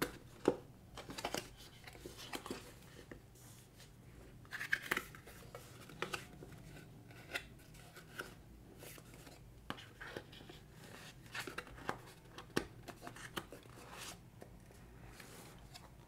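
Cardboard packaging being handled: the flaps of a small paperboard box are opened and an inner box is pulled out, with scattered scrapes, rustles and light taps.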